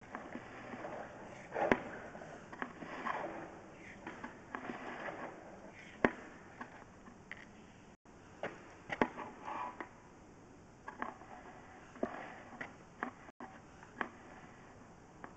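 Irregular knocks, clicks and scrapes as a push-rod drain inspection camera is pulled back through the pipe. The two sharpest knocks come just under 2 seconds in and about 6 seconds in.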